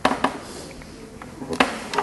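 A handful of sharp knocks in a small room, the loudest at the very start and about one and a half seconds in, with a faint murmur of voices between them.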